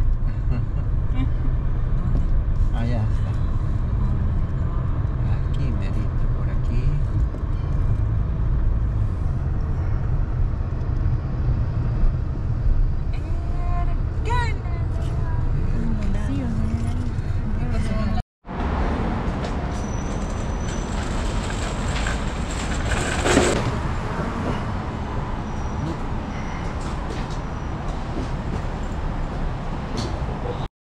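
Steady low road and engine rumble inside a car driving slowly. About 18 seconds in the sound cuts out for a moment and comes back as a lighter traffic ambience with less rumble, with one brief louder sound partway through.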